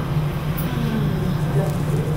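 Steady low hum of room background noise, with a faint voice.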